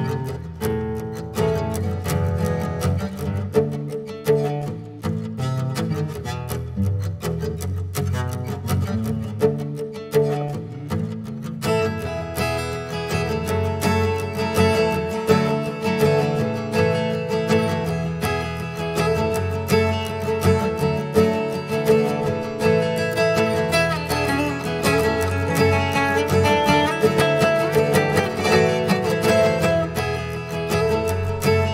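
Tanglewood acoustic guitar fingerpicked with a capo, playing a repeating picked pattern. About twelve seconds in, a brighter second layer joins over it as a loop is built up.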